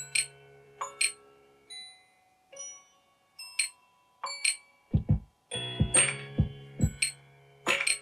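Electronic music loop clips playing from Ableton Live: sparse, short bell-like tones at first. About five seconds in, a deep kick-drum pattern and a sustained chord come in.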